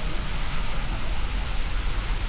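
Niagara's Horseshoe Falls pouring past a tunnel portal: a steady, unbroken rush of falling water with a deep rumble underneath, heard from inside the rock tunnel.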